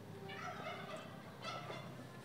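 Fowl calling twice, once about a third of a second in and again about a second and a half in.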